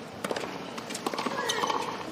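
Tennis racket strikes on the ball: several sharp hits in quick succession in the first half, as in a serve followed by a quick volley. The background noise then rises.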